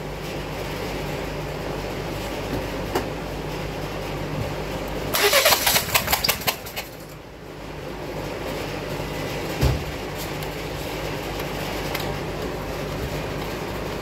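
Turbocharged direct-injection Volvo engine idling steadily during a running compression test on one cylinder. There is a short burst of rattling about five seconds in, and the engine note dips briefly around seven seconds before it steadies again.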